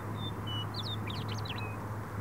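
Western meadowlark singing: a few short clear whistles, then about a second in a quick run of rising and falling slurred notes that ends on a short level note. A steady low hum runs underneath.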